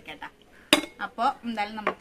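A single sharp clink of a small glass plate being set down, about three quarters of a second in, between bits of talk.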